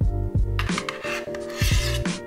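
Background music with a steady beat, over a spoon scraping frozen ice cream out of an ice cream maker's canister; the scraping is loudest in the second half.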